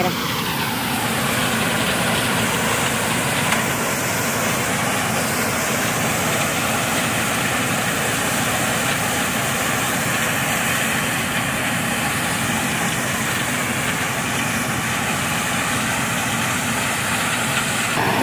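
World corn combine harvester (102 HP) running steadily while harvesting corn, its engine and threshing machinery giving an even, unbroken noise.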